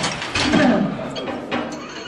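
Loaded barbell clanking into the steel uprights of a bench press rack as it is racked: a metal clatter at the start and again about half a second in, with lighter knocks after.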